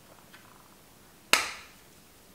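A single sharp plastic click a little past the middle, the snap of a small compact mirror's case being opened, with a faint tap shortly before it.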